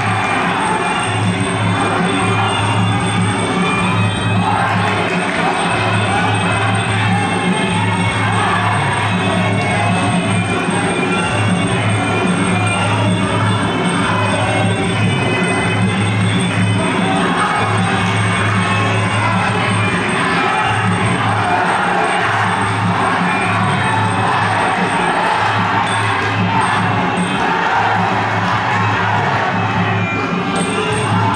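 Traditional Kun Khmer ring music, a wavering reed-pipe melody over steady drumming, plays without a break during the bout, with the crowd cheering underneath.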